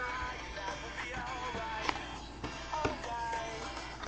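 Quiet background music, with a few soft clicks over it.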